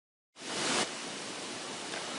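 Steady hiss of the recording's noise floor. It cuts out completely for a moment at the start, then comes back with a short swell of breathy noise before settling.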